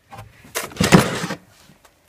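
A plastic crate scraping and sliding against the wooden floor of a trunk as it is pulled out. It is a rough noise lasting about a second, starting about half a second in.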